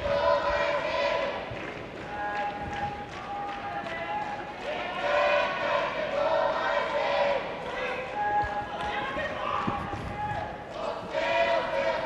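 Arena crowd of spectators shouting and calling out encouragement, many voices overlapping in held, chant-like calls, with a few soft thuds.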